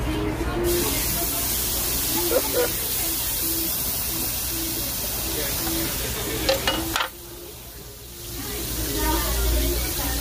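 Raw pork belly sizzling on a hot tabletop barbecue grill as the strips are laid down, with a few sharp clicks of metal tongs. The sizzle sets in about a second in, drops away suddenly around seven seconds, and comes back near the end as more strips go onto the grill.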